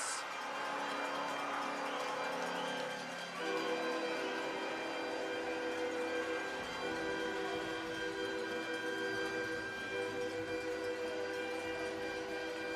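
Arena goal horn sounding after a goal: a long, steady chord of held tones over a faint crowd haze, starting a few seconds in with a brief break partway through.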